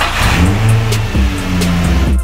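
Nissan 350Z's V6 engine being revved, its pitch shifting up and down, over background music.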